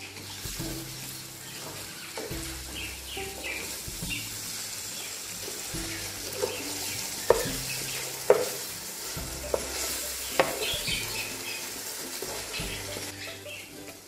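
Tomato and onion masala with whole spices sizzling in oil in an aluminium pot, stirred with a wooden spatula. The spatula knocks sharply against the pot several times in the middle.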